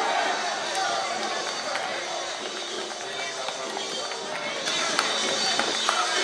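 A team of players shouting and cheering together, many voices at once, over music, with a few sharp claps in the second half.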